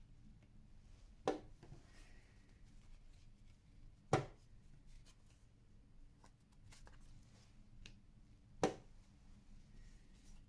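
Three sharp clicks of a LEAP digital chess clock's buttons being pressed: about a second in, at about four seconds, and near nine seconds. Between them, faint handling sounds of paper tiles on a wooden table.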